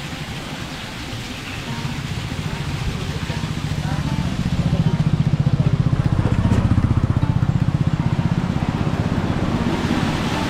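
A small vehicle engine running close by with a fast, even pulse, growing louder from about two seconds in and loudest through the second half.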